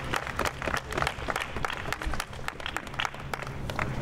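A small group of people applauding, with many separate hand claps heard individually rather than as a dense roar.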